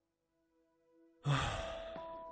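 A man's long sigh begins suddenly about a second in and slowly trails off, over faint held music notes.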